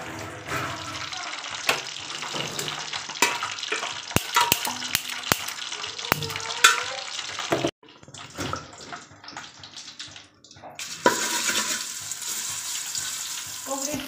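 Spoon clicking and scraping against a wooden mortar, then, about three seconds before the end, crushed garlic dropped into hot oil in a steel pot sizzles steadily as a garlic tadka.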